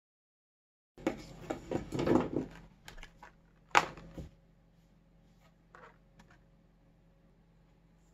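Hard objects handled on a wooden tabletop: a quick run of knocks and clicks, then one sharp, louder click, then a few faint ticks.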